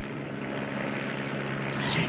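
Steady engine drone with a low hum, slowly growing louder.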